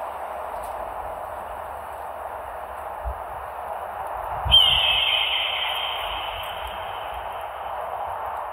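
A steady hiss of ambience, then, about halfway through, a single long, high screech of a bird of prey that dips slightly in pitch and slowly fades away.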